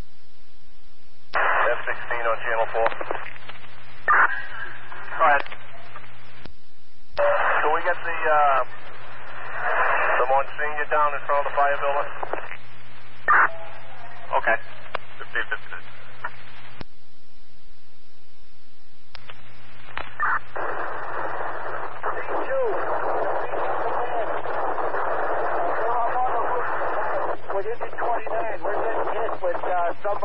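Fire department radio traffic from a scanner: several short voice transmissions, too garbled to make out, keyed on and off with hiss between them over a steady low hum. About twenty seconds in a long transmission starts, its voice buried in dense noise.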